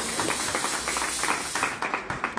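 Stage smoke machine blasting a jet of fog with a steady hiss that cuts off near the end, over scattered hand clapping.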